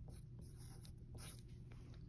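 Faint scratching of a pencil writing on a paper worksheet, a few short strokes.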